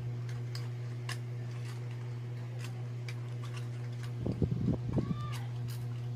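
Light, scattered clicks of small plastic toy-grocery pieces being handled, over a steady low hum. About four seconds in comes a brief louder cluster of knocks, ending in a short squeak.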